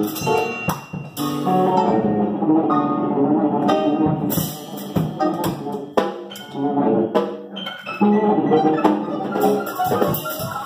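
Live small-group jazz: sustained melodic instrument lines over a drum kit, with several sharp cymbal and drum strikes through the passage.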